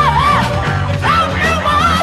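1960s psychedelic garage rock recording: a loud, high singing voice sliding between notes over a band with bass and drums.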